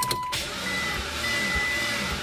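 Mitsubishi Lancer Evolution X engine being cranked by its starter motor, turning over slowly and unevenly without catching: the battery is too weak, almost dead. A short steady beep sounds just as the cranking begins.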